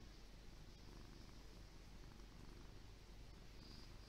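Domestic cat purring steadily and faintly.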